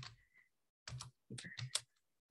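Typing on a computer keyboard: two short runs of keystrokes, about a second in and just after.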